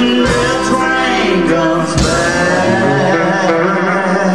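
Country band playing live, a man singing lead over guitar and band accompaniment.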